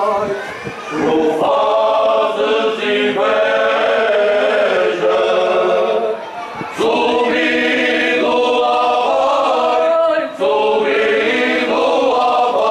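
Men's choir singing cante alentejano unaccompanied, in several voices and slow held phrases. The singing breaks off briefly for breath about a second in, at about six and a half seconds, and again past ten seconds.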